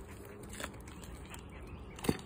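Quiet woodland background with faint bird chirps and a couple of soft taps.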